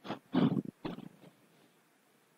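A man's voice making a few short, indistinct mumbled sounds in the first second, then quiet room tone.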